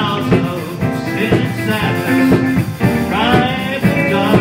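A live church band playing an upbeat rock-style song, with drums, guitar, bass and keyboards, and a voice singing the melody from about three seconds in.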